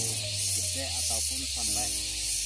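Background music with held melody notes and a steady bass, over a loud high hiss that swells and fades in even pulses.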